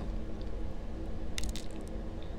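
Low, steady background rumble with a faint hum, and a quick run of small clicks about one and a half seconds in.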